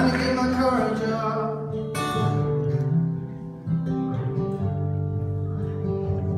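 Two acoustic guitars playing live: sustained picked notes, with a strummed chord about two seconds in.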